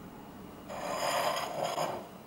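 A rasping scrape about a second long, starting under a second in, with a thin high edge to it.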